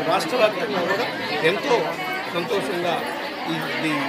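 A man speaking, with other people's voices chattering around him.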